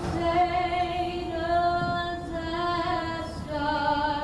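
A woman singing solo, most likely the national anthem during the presentation of the colors. She holds one long note for most of the stretch, then steps down to a lower note near the end.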